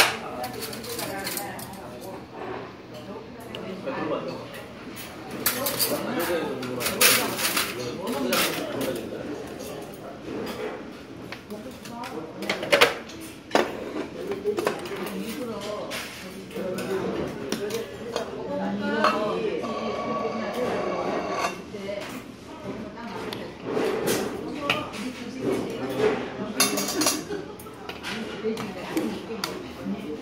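Restaurant clatter: dishes and metal spoons clinking in short sharp knocks throughout, over people's voices talking and a brief laugh.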